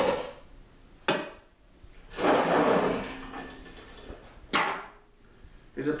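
Metal rotisserie parts being handled: a sharp clank at the start, a click about a second in, a longer scraping rattle around two to three seconds in, and another clank about a second before the end.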